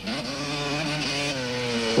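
Dirt bike engine running hard at a fairly steady pitch as the bike rides through grass, the note dipping slightly about one and a half seconds in.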